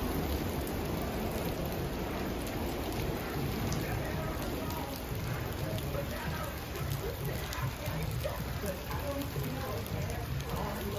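Heavy rain pouring down steadily and splashing on the pavement and street.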